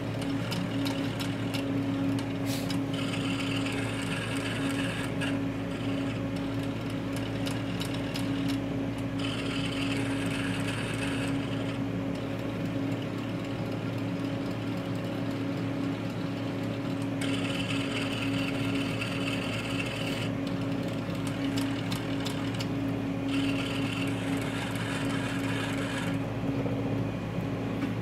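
Rudolph Auto EL III ellipsometer running an automatic thickness measurement: a steady low hum throughout, with several spells of higher mechanical whirring, each a few seconds long, that start and stop abruptly.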